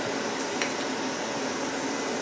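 Steady, even fan-like hiss of background room noise, with no distinct events.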